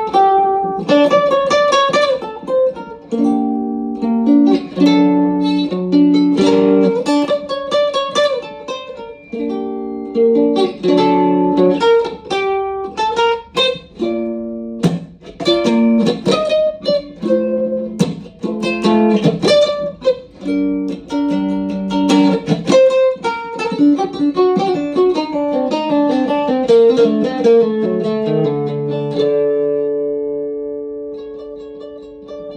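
Small cigar box guitar played solo, picking a melody mixed with chords. Near the end it settles on a held chord that is left to ring out and fade.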